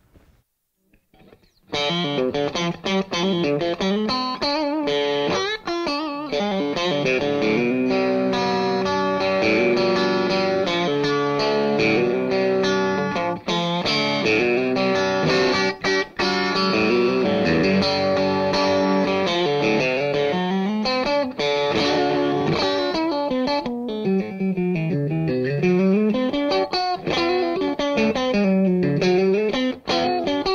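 Electric guitar with DiMarzio True Velvet single-coil pickups in the bridge-and-middle position, played through a Vox AC15 hand-wired amp turned up a little for a slight grind, so the tone is part clean and part gritty. The playing starts after a short silence, about two seconds in.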